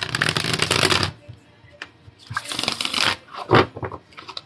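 Tarot cards being shuffled by hand: a fast run of card flicks through the first second, another burst of shuffling about two and a half seconds in, then a single sharp tap near the end.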